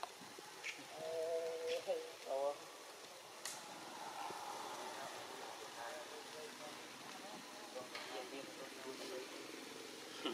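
Faint human voices in short stretches, clearest in the first three seconds, over steady outdoor background noise, with one brief sharp click about three and a half seconds in.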